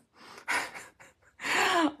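A woman breathing audibly in a pause between sentences: a short breath about half a second in, then a longer, louder intake of breath near the end, just before she speaks again.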